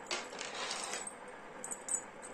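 Silver anklets jingling as they are handled, with several bright, quick tinkles near the end.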